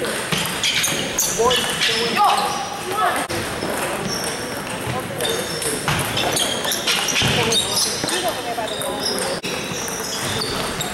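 Table tennis balls clicking off paddles and tables in rallies, an irregular patter of light knocks from several tables at once, over a steady hum of voices in a large gym.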